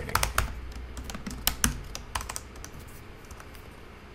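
Typing on a computer keyboard: a quick run of keystrokes in the first two seconds, then sparser, fainter clicks.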